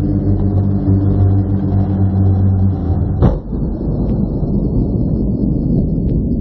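Radio-controlled hovercraft's motor and fan running with a steady low hum for about three seconds, then a sharp knock, followed by a rough rushing noise.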